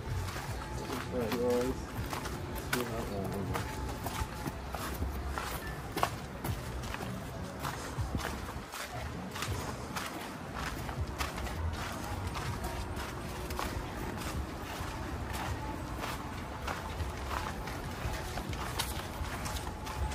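Footsteps on a sandy dirt path, a series of irregular steps and scuffs over low handling rumble from a handheld phone, with a brief sung or spoken voice in the first couple of seconds.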